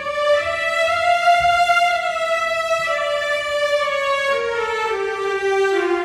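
Sampled violins from Orchestral Tools' Berlin Strings library playing a slow legato melody. It rises at first, then steps down through a few long held notes, each note sliding smoothly into the next, showing off the library's new legato transitions.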